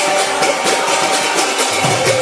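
Kirtan music: sustained held tones under a quick, even shimmer of hand cymbals, about four strokes a second. The low drum strokes fall away for most of the moment and come back near the end.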